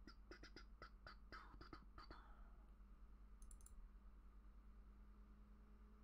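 Near silence with a quick, irregular run of faint computer clicks in the first two seconds, over a low steady electrical hum.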